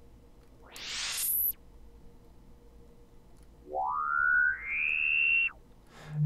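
Digital audio feedback from an Ableton Live effects rack, ringing through a high-Q EQ Eight filter whose frequency a smooth random LFO sweeps. A short hissy sweep rises to a very high pitch about a second in, then a whistling tone glides upward in two steps and cuts off near the end.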